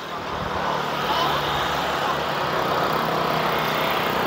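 Motorcycle engine passing on the road below, growing louder over the first second and then holding steady.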